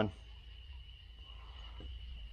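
Quiet shop room tone: a low steady hum with a thin, steady high-pitched whine, and one faint tick near the end.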